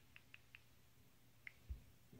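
Faint key-press clicks from a smartphone's on-screen keyboard as letters are typed: four quick clicks, then one more about a second later, followed by a soft low thump.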